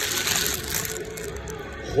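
Rustling handling noise, as the phone is moved about over a dumbbell lying on fabric, louder in the first second and fading.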